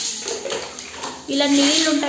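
A woman speaking Telugu, her voice starting a little past a second in, with water sloshing and splashing on a wet tiled bathroom floor in the first second.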